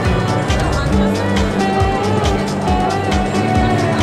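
Background music with a steady beat, sustained tones and a wavering melody line over it.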